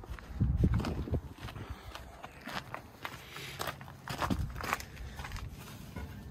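A few footsteps with scattered light knocks and clicks, thumpiest in the first second.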